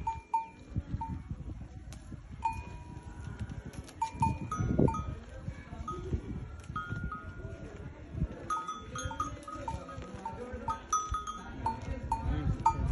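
Small bells on camels clinking intermittently, in short ringing strikes that sometimes come in quick pairs, over the rustle of a camel browsing on tree branches.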